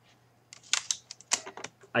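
A run of irregular short clicks and taps, starting about half a second in, over a faint low steady hum.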